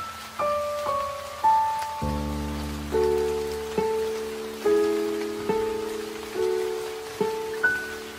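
Soft, slow piano music over a steady rain sound: a falling line of single notes, then a low chord comes in about two seconds in and notes sound at an even, unhurried pace.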